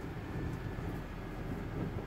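Steady engine and road rumble heard inside the cabin of a manual car driving slowly.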